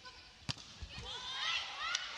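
A single sharp smack of a volleyball being hit about half a second in, followed by a string of short, high squeaks of athletic shoes sliding on the indoor court floor during the rally.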